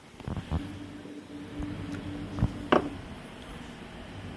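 Plastic fog lamp housing and bulb being handled, giving a few sharp clicks and knocks, the loudest about two-thirds of the way through, over a steady low hum.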